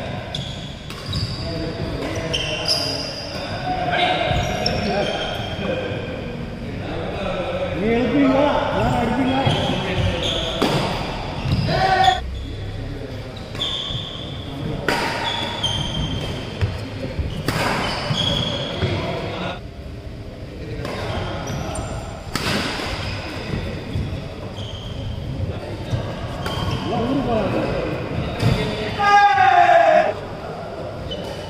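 A doubles badminton rally: rackets hitting the shuttlecock with repeated sharp cracks and shoes squeaking on the court floor, with players' voices, all echoing in a large hall.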